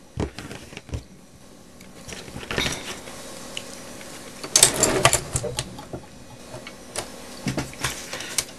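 Paper and small craft tools being handled off-camera: scattered clicks, knocks and rustles, with the loudest cluster a little past halfway.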